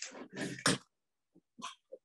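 Cardboard box being opened by hand: its flaps scrape and rustle in a few short bursts in the first second, the loudest near the end of that second. A couple of faint knocks follow near the end.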